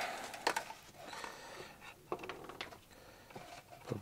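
Faint handling noise from the workbench: scattered light clicks and rustling as the plastic pushrod snake tubing and the balsa fuselage are handled, with a sharper click about half a second in.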